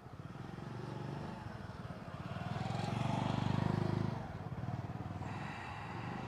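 A motorcycle passing along the street, its engine growing louder to a peak about three to four seconds in, then fading away.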